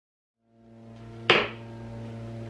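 Dead silence for the first half second, then a steady low hum fades in. About a second and a half in, a single short, sharp clack: a makeup brush set down on a hard surface.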